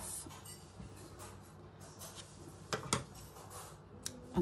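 Quiet handling of cotton fabric and sewing thread, then a few sharp clicks close together about three seconds in as small scissors are brought in to snip the tangled thread.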